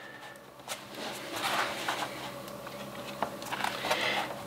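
A long plastic spirit level being laid down and slid into position on a large sheet of paper over cardboard, with the paper rustling and a couple of light knocks.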